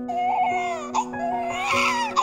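Newborn baby crying in two wavering wails, the second louder near the end, over steady background music.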